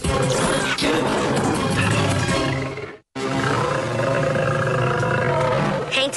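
Cartoon soundtrack: dramatic action music with a large animal's roar mixed in. A sudden dropout to silence just after the halfway point.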